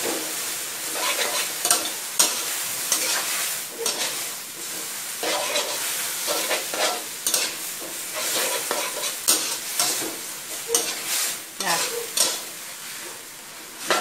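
Water spinach and oyster mushrooms stir-frying in a hot wok: steady sizzling of the oil, with a metal spatula scraping and knocking against the wok in quick, irregular strokes.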